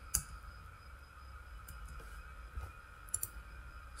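A few faint, sparse computer mouse clicks: one just after the start and a quick pair about three seconds in.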